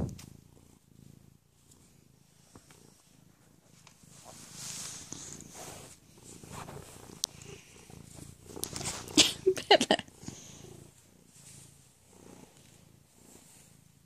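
Tabby cat purring quietly, close to the microphone, as it is stroked. There are a few brief rustles and clicks from handling about nine to ten seconds in.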